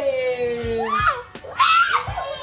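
A young child's playful screaming while being swung about: a long drawn-out vocal note falling slowly in pitch, then a loud, high-pitched squeal near the end. Faint background music with a regular beat runs underneath.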